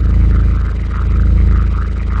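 A loud, deep rumble from a title-intro sound effect. It swells and eases twice.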